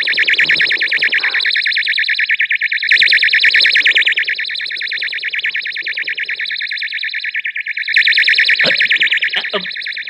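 Novelty electric doorbell ringing without a break: a high-pitched, rapidly warbling electronic trill.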